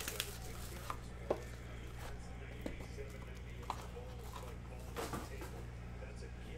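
Cardboard trading-card boxes being handled and set down on a table: a few light knocks and taps, spread out, over a steady low hum.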